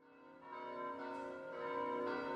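Bells ringing, fading in from silence: several tones struck about every half second and left to ring on together.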